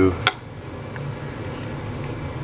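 A sharp click just after the start, then a steady low hum of background machinery.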